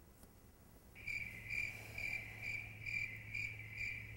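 Cricket chirping: a steady high trill that pulses about twice a second, starting about a second in after a near-silent moment. It serves as the comic 'crickets' awkward-silence gag.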